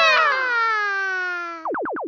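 A long held voice note that slides slowly down in pitch, with a slight wobble at the start. About one and a half seconds in it gives way to a quick run of about eight falling electronic blips, a video-game-style transition sound effect.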